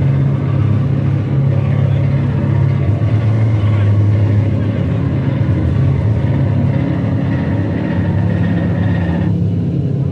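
Live band playing a loud, sustained wall of distorted electric guitar and bass, a dense low drone with no clear beat. The higher guitar layer drops away near the end.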